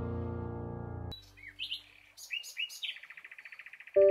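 A held music chord fades and cuts off about a second in. A bird then sings a few separate high chirps, followed by a rapid trill near the end.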